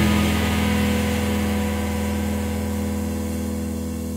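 Electric guitars ringing out the song's final chord through their amplifiers: a steady droning hum with no new notes, slowly fading.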